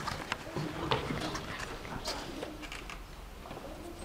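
Faint, indistinct voices from across a small room, with several light clicks and taps scattered through.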